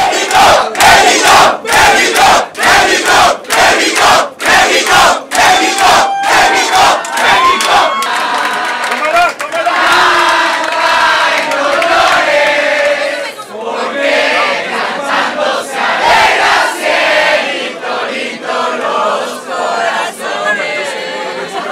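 A crowd of football fans celebrating a goal: rhythmic loud shouts, about two and a half a second, for the first eight seconds, then continuous cheering and shouting.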